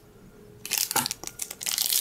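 Foil Pokémon booster pack wrapper crinkling and crackling as it is handled, starting about half a second in.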